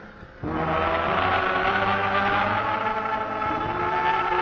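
Live concert band music: after a brief lull, the band comes in suddenly and loudly about half a second in, playing full held chords.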